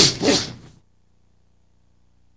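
Clothing rustling and swishing as two people grapple fast, turning, striking and wrenching a training gun away, in a few quick swells that stop under a second in; then near silence.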